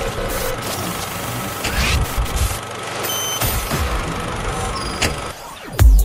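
Vehicle sound effects opening an electronic track: a steady engine and traffic noise with low sweeps falling in pitch and a short beep about three seconds in. Heavy kick drums of the beat come in near the end.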